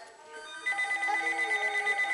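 A loud ringing tone starts suddenly about two-thirds of a second in: a rapid trill on a few steady pitches that runs on.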